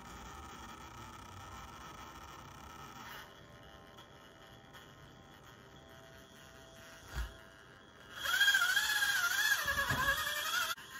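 Faint whine of a micro RC crawler's small electric motor as it creeps over a tabletop obstacle, fading out after about three seconds, with a short thump about seven seconds in. Near the end, a much louder high-pitched wavering sound that rises and falls in pitch takes over.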